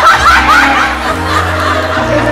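Audience laughing, loudest in the first second, over background music with held low notes.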